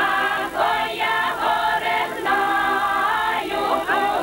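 A village folk choir, mostly women's voices, singing a Ukrainian folk song together in sustained notes.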